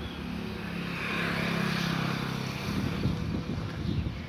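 A motor vehicle driving past on the road, its engine hum and tyre noise swelling to a peak about a second and a half in and then fading. Scattered knocks and rustles follow near the end.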